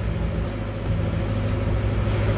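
Boat engine running steadily with a low, even pitch.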